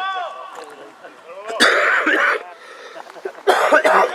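A person close to the microphone coughing twice, a longer cough about one and a half seconds in and a shorter one near the end, over background voices.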